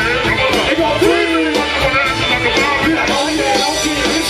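Live hip-hop band music through a PA: vocals over guitar, bass and drums.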